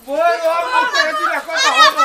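Several high-pitched voices shouting and crying out over each other without a break, loudest near the end.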